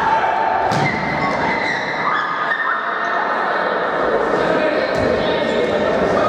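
Indoor football match in a sports hall: players shouting to each other, echoing off the walls, with the thud of the ball being kicked about a second in and again near the end.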